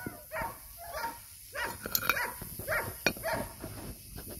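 German Shepherd giving a string of short whines and yips, about two a second.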